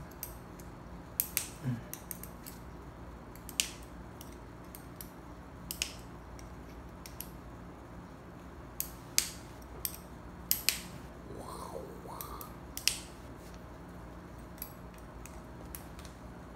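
Sharp, irregular metallic clicks and taps of a steel hex key turning screws in a small aluminium RC hydraulic valve block as it is assembled by hand. A brief rising tone comes about twelve seconds in.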